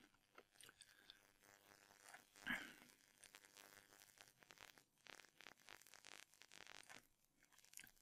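Near silence: room tone with faint scattered clicks and one brief soft sound about two and a half seconds in.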